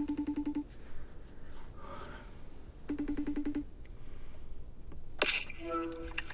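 An iPhone FaceTime call ringing out on the phone's speaker: two short, rapidly pulsed rings about three seconds apart, then a click and a quick rising chime near the end as the call connects.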